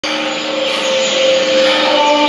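A steady rushing noise with two low held tones beneath it, the opening of a performance backing track.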